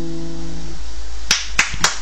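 The last strummed chord of two acoustic guitars rings and dies away within the first second, then three sharp hand claps follow about a third of a second apart near the end.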